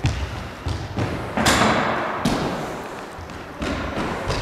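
Thuds of a child running and landing in a school gym, with a loud crash about a second and a half in that rings out in the hall's echo, then a few softer thumps.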